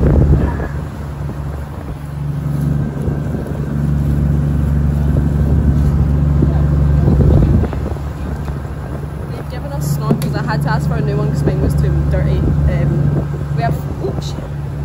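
Motorboat engine running with a steady low drone under rushing wind and water noise as the boat travels.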